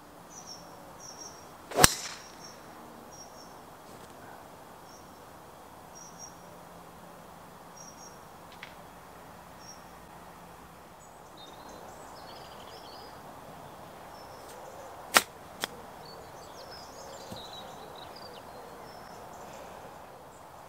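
Golf driver striking a ball off the tee with one sharp, loud click about two seconds in, over the repeated high chirps of small birds. Two fainter sharp clicks about half a second apart come later on.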